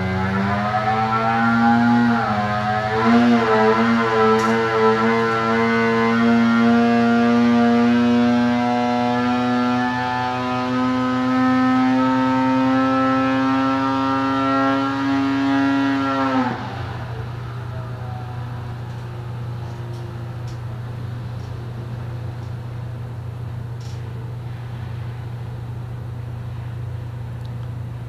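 2020 Arctic Cat Alpha's CTEC 800 two-stroke twin making a full-throttle dyno pull, its pitch wavering for the first few seconds and then rising steadily as it climbs from about 5,750 to about 8,000 rpm. The engine cuts off suddenly about sixteen seconds in, leaving a steady low hum.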